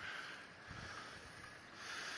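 Faint, steady outdoor street background noise: an even hiss with no distinct event.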